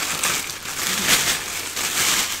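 Rustling and crinkling in several short bursts as a sequin pillowcase and its bag are handled.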